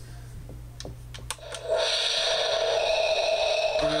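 A few clicks, then about two seconds in the Darth Vader alarm clock radio's speaker comes on with a loud, steady hiss like static from an untuned radio.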